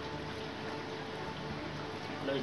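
Steady background hum with a faint even hiss, with no distinct knocks or strokes.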